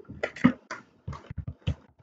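A run of short, irregular clicks and crackles, about nine in under two seconds.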